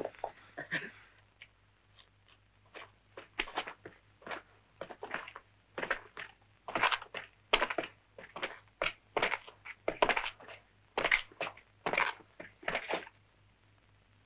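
Slow footsteps of two people walking on dirt ground, short scuffing steps coming irregularly, about two to three a second. A brief laugh at the very start.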